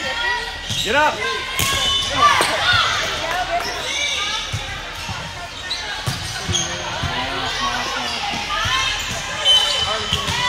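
Busy volleyball gym ambience: volleyballs thudding against hands and the hardwood floor from several courts, with sneakers squeaking on the hardwood and overlapping voices of players and spectators in a large echoing hall.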